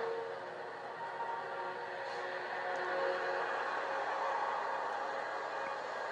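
Quiet background film score of a few soft held notes over a steady hiss, heard through a TV's speaker.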